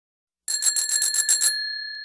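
A bicycle bell rung in a rapid trill of about ten strikes in a second, starting about half a second in, then left ringing and fading.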